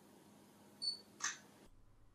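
Panasonic FZ330 bridge camera giving a short high beep as autofocus locks on the subject, followed a moment later by a brief soft noise.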